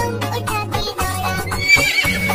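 Children's song backing music, with a horse whinny sound effect: a wavering high call near the end.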